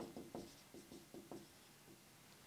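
Marker pen writing on a whiteboard: a quick run of short, faint strokes that stops about a second and a half in.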